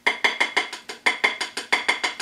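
A slotted spatula tapped quickly and repeatedly against a plate, about eight short, slightly ringing clicks a second.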